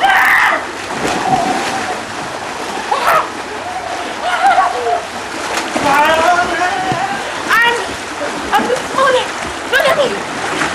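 Splashing water in a swimming pool, with a loud splash right at the start as someone enters the water, and people in the pool shouting and calling out over the splashing, several loud shouts about six seconds in and near the end.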